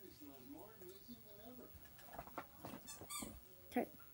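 Caged pet birds chirping faintly, with a short run of high chirps shortly before the end, after a few soft clicks.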